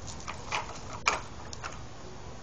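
Plastic tricycle rolling on concrete: a low rumble from the hard plastic wheels with a few short clicks and knocks.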